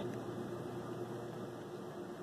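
Faint steady hiss with a low, steady hum underneath: background room noise, with no audible clicking from the hand-turned gears.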